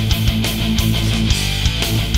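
Melodic death/thrash metal band playing at full tilt: heavily distorted electric guitars and bass over drums with regular, hard-hitting kick and cymbal strikes.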